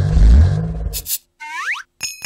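Cartoon sound effects: a loud low rumble, then a brief sharp swish about a second in, followed by a quick rising springy boing.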